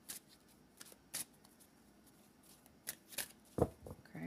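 A deck of cards being shuffled by hand: scattered short card flicks, with a few low thuds near the end.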